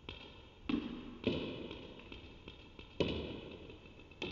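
Table tennis ball being served: sharp, ringing plastic taps of the ball off the racket and bouncing on the table, five or six at uneven spacing, the loudest just over a second in and at about three seconds.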